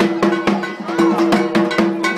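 Drums and a clanging metal percussion instrument beaten in a fast, even rhythm, about four strikes a second, over a steady ringing tone.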